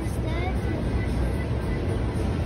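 Outdoor street-café ambience: a steady low rumble with faint voices in the background.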